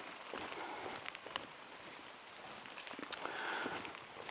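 Faint, even patter of light rain in a forest, with a few soft clicks and rustles, one about a second and a half in and another about three seconds in.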